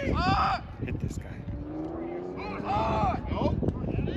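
Shouts from coaches and spectators, with no clear words, over steady outdoor background noise. One shout comes just after the start and a longer call comes in the second half.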